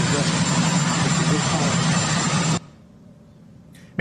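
Loud, steady helicopter engine and rotor noise with a thin high whine, nearly drowning a man's faint speech. It cuts off abruptly about two and a half seconds in, leaving only low background hiss.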